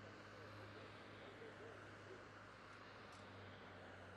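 Near silence: a faint steady low hum under a faint background haze, with faint distant voices early on.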